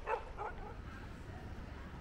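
A dog barking twice in quick succession, two short barks about half a second apart, over a low steady rumble.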